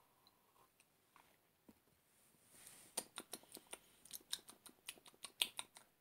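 Faint wet mouth clicks and lip smacks of someone tasting a drink: near silence at first, then an irregular run of small clicks from about halfway through.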